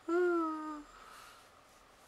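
A woman's brief hum, held for just under a second with its pitch sinking slightly.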